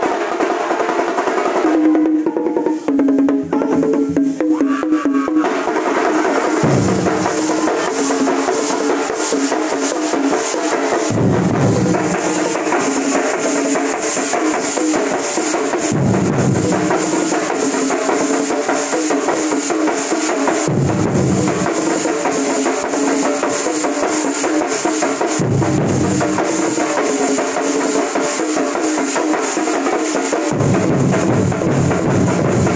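A large ensemble of Kerala chenda drums beaten with wooden sticks, played loud and without a break in a fast, dense rhythm. Deeper booming beats return about every four to five seconds.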